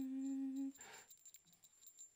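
A man's voice holding one steady hummed, sing-song note for under a second, then a short breath, then quiet.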